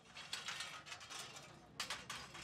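Loose metal railing bars clinking and scraping against each other and the pavement as they are handled: a run of light, rattling metallic strokes, the loudest just before the end.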